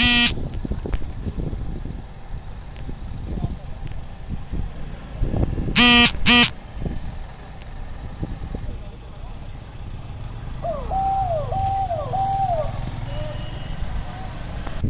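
Motorcycle and car engines running as vehicles pass slowly through a checkpoint. A short horn honk sounds at the start, and two quick honks come about six seconds in.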